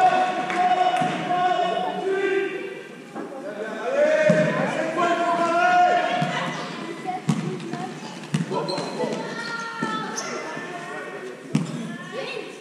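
A basketball bouncing on an indoor court floor: several separate thuds, with players' and spectators' voices echoing in a large sports hall.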